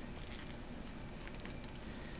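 Faint handling noise from fingers lifting and pressing a soft silicone skin onto an iPhone: small scattered clicks and rubbing over a steady hiss.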